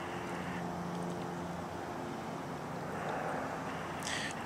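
Steady outdoor street background with a faint, even engine hum from distant traffic.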